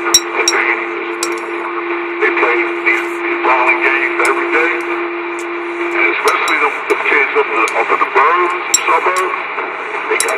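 Two-way radio voice traffic heard through a receiver's speaker: hard-to-make-out, warbling voices over static, with a steady whistle tone that cuts off about six seconds in. A few sharp clicks fall in the first seconds and again near the end.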